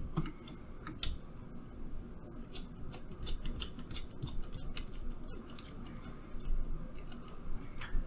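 Scattered small clicks and ticks of an Ethernet cable's plastic connector being handled and plugged into a port on the robot arm's metal base, over a low hum of room noise.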